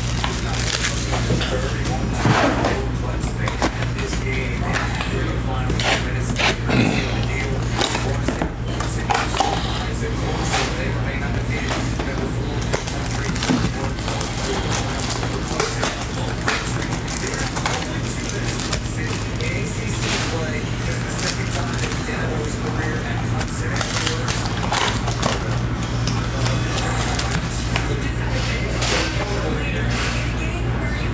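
Clear cellophane shrink wrap crinkling and tearing as a sealed trading-card hobby box is unwrapped by hand, in many short crackles, with music playing underneath.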